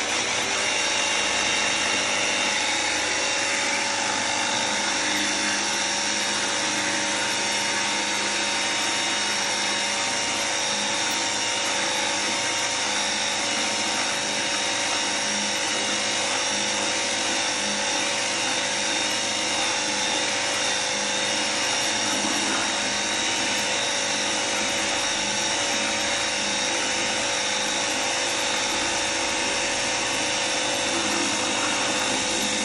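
Cordless 20 V battery pressure-washer gun running continuously, its motor and pump giving a steady whine at constant pitch while the jet sprays into a bucket of water.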